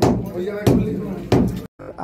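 Hammer blows on a brick wall, three sharp strikes about two-thirds of a second apart, knocking bricks out to break through the wall. Voices talk in the background between the blows.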